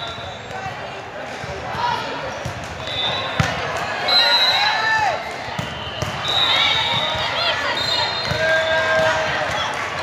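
Volleyball rally in a large, echoing sports hall: a few sharp hits of the ball and short high squeaks of athletic shoes on the court floor. Voices of players and spectators chatter underneath.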